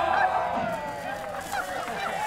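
Several people whooping and shrieking in celebration, their overlapping calls gliding in pitch and easing off after the first second.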